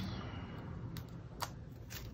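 Soft handling of a roll of glue dots as a dot is peeled off, with three light ticks about a second in, the clearest about one and a half seconds in.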